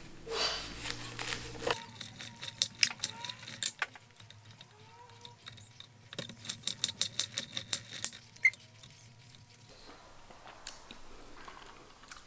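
A knife slicing through a nori-wrapped sushi roll on a wooden cutting board, followed by two runs of light clicks and taps as the cut pieces are set down on a plate.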